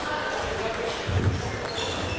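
Sports-hall ambience of table tennis: small hollow clicks of balls hitting tables and bats across the hall, with voices in the background and a low thump a little over a second in.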